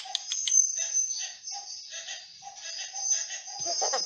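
Animatronic toy chimpanzee making a quick run of short, repeated chimp chattering calls through its small speaker.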